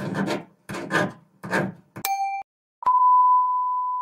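A run of rasping bursts about half a second apart, then a short beep about two seconds in, then a click and a steady high test tone, the kind played with colour bars, starting about three seconds in.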